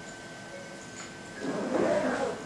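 Quiet room tone with a faint steady high whine, then a short swell of noise near the end.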